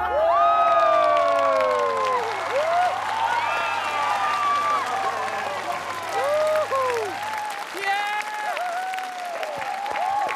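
Studio audience applauding and cheering, with shrill rising-and-falling cheers over the clapping right after a dance performance's music ends.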